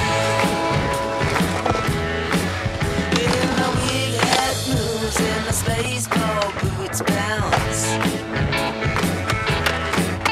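Rock music soundtrack playing over skateboard sounds: urethane wheels rolling on concrete and a few sharp clacks of the board popping and landing.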